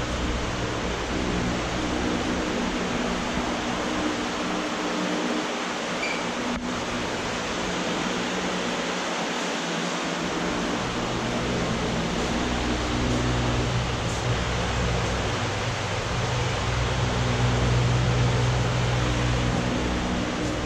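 Steady hiss and low hum of air conditioning and ventilation in a basement room. The low hum fades for a few seconds in the middle, then comes back stronger in the second half.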